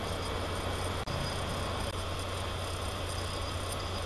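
Steady low hum with an even hiss from the recording's background, with a brief click about a second in.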